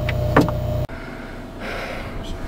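Steady low machine hum with a faint steady tone and one short click, cut off abruptly just under a second in. Quieter rustling follows as the camera is picked up and handled.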